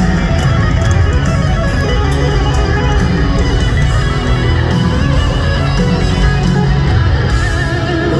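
Live rock band playing an instrumental stretch with no singing: loud electric guitars over bass and drums, recorded from the crowd in an arena.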